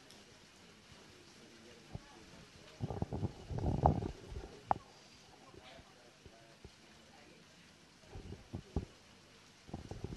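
Quiet football-pitch ambience: a faint steady background broken by short muffled bursts of noise about three seconds in and again near the end, with one sharp knock in between.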